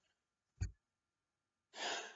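A pause in a man's talk: a short soft click just over half a second in, then a loud, noisy breath near the end as he gets ready to speak again.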